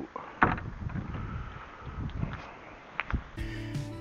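A few knocks and rustles from handling a dumpster, picked up close by a body-worn camera over a low rumble; the loudest knock comes about half a second in and another at about three seconds. At about three and a half seconds, background guitar music starts.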